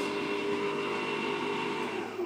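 Electric boat-propulsion motor spinning unloaded at about 3,000 RPM: a steady electric whine made of several held tones over a running hum.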